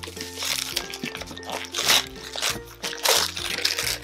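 Gift-wrapping paper being torn and crinkled in repeated bursts, over background music.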